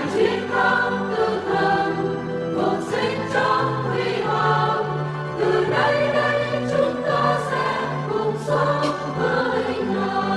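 Choir singing a hymn in long held notes over a sustained low bass line.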